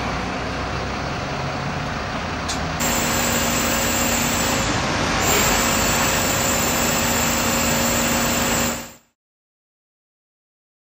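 A bus engine idling in street noise. About three seconds in, it gives way to the steady running of fire-service engines and pumps with a low steady hum, under a water jet from an aerial platform. The sound fades out just before the end.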